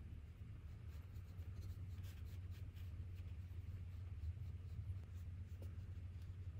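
Faint, soft strokes of a paintbrush spreading gouache across paper, over a steady low room hum.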